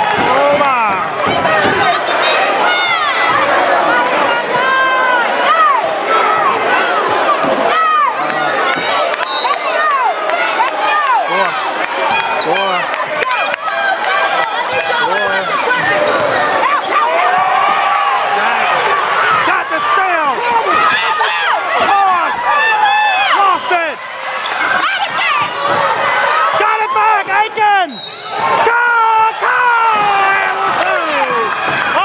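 Basketball game sounds in a gym: a basketball bouncing on the hardwood court among many overlapping voices of players and spectators, with a few sharp thuds.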